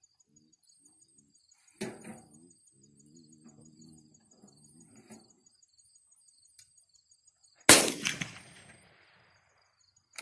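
A single handgun shot about three quarters of the way in, sharp and loud, with a short echoing tail. Earlier there is a fainter knock, and insects tick steadily in the background.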